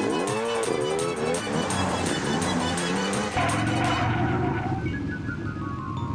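Cartoon vehicle engine sound effects over background music with a regular beat: an engine revs and sweeps past in the first second or so, then a steady engine hum sets in about three seconds in.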